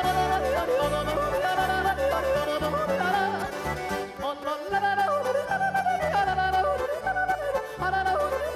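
Swiss yodel song: a yodeling voice leaps up and down in pitch over a folk-band accompaniment with a steady bass line.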